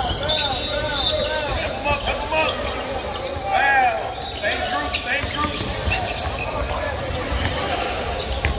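Basketballs bouncing on a hardwood arena floor, echoing in the big hall, with repeated short squeaks of sneakers on the court.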